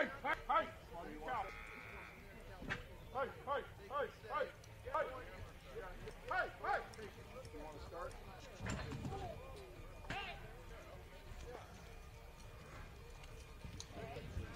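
Short yelled calls, rising and falling, repeated two or three times a second to push cattle along during a ranch-sorting run; they thin out after about seven seconds.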